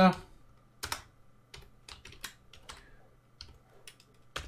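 Computer keyboard being typed on: a run of short, irregularly spaced keystroke clicks.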